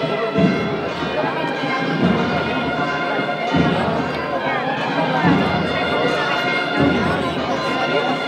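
Procession band music: sustained wind-instrument notes held throughout, with a low drum beat about every second and a half, over the chatter of a crowd.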